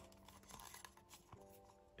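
Very quiet background music of held notes that shift in pitch, with a few faint clicks of plastic being handled as the figure's feet are fitted onto the base pegs.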